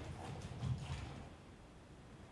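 Bare feet thudding and brushing on a stage floor: a few soft footfalls in the first second or so, then quiet room noise.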